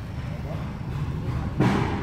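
Steady low hum of a VW Golf running with its climate control switched on, picked up close under the dashboard. The climatronic heater-flap actuator, freshly cleaned and regreased, no longer ticks. About one and a half seconds in there is a short, louder rustle.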